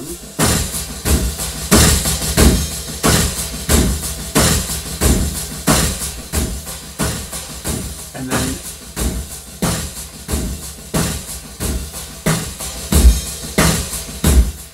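Multitrack drum loop playing back: layered live drum kit parts and percussion, with sampled mid-20th-century military gun sounds added as extra drum hits, in a steady beat of strong kick-heavy strokes.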